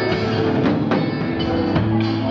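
Live band playing: acoustic and electric guitars over a drum kit, with regular drum hits.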